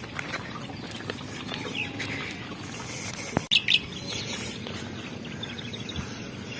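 Birds chirping in short, scattered calls over a low steady background. There is one sharp click a little past halfway, followed by a few brighter chirps.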